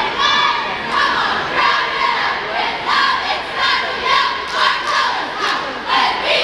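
A cheerleading squad shouting a cheer together in rhythmic bursts, about two shouts a second, over crowd noise.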